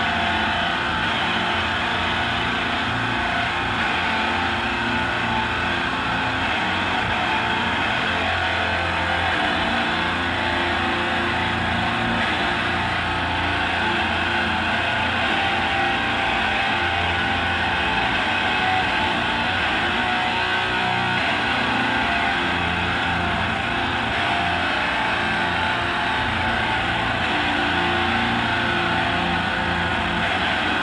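Heavily distorted electric guitar played live through an amplifier, making a loud, dense, unbroken wall of sound with no clear beat.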